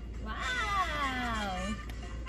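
One long wordless vocal exclamation from a person, falling slowly in pitch and turning up briefly at the end.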